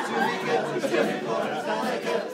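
Many voices at once: an a cappella group's singing mixed with the chatter of guests in a room.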